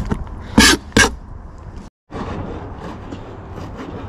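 Kitchen knife chopping squid on a plastic cutting board: two loud, sharp knife strokes in the first second, then after a brief dropout fainter, lighter chopping.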